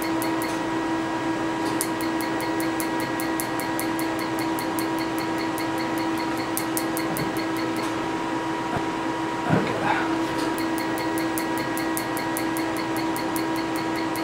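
PicoSure tattoo-removal laser firing pulses into the skin: runs of rapid, evenly spaced clicks, pausing briefly near the start and again for a few seconds in the middle, over the steady hum of the laser unit.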